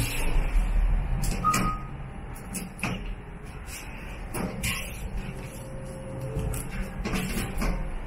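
Inside a Hyundai WBSS2 elevator car: a low rumble in the first couple of seconds, a short beep about one and a half seconds in, then scattered clicks and knocks around the car's operating panel and doors.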